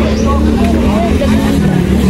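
Market street sound: people talking over a steady low rumble of motor traffic.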